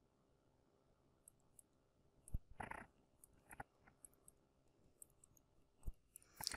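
Faint taps and short scratches of a stylus on a tablet screen during handwriting: several small clicks spread over a few seconds, the clearest about two to three seconds in.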